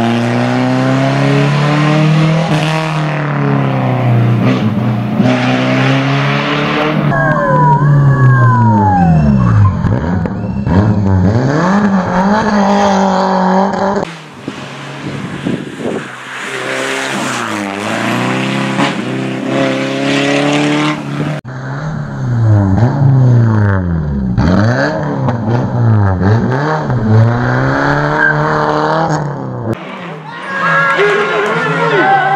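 Peugeot 306 rally car's four-cylinder engine revving hard and dropping again and again as it brakes, changes gear and accelerates out of tight hairpins, with a brief tyre squeal in a corner. The sound breaks off abruptly twice as one pass gives way to the next.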